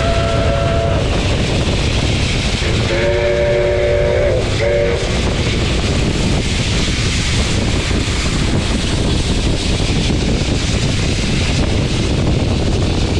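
Steam locomotive running at speed, with a steady rush of wind and running noise on the microphone. A multi-note steam whistle sounds three times: a short blast at the start, a longer one about three seconds in and a brief toot just after.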